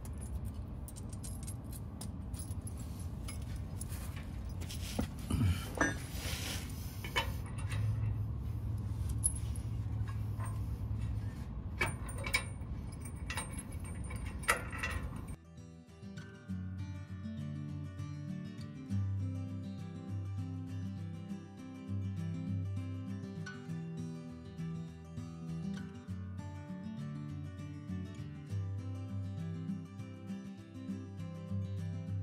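Small metal clinks and knocks from a steel bumper support bracket and its bolts being handled and fitted against a Jeep's frame, with a low hum for a few seconds midway. About 15 seconds in, this cuts off abruptly and acoustic guitar background music plays instead.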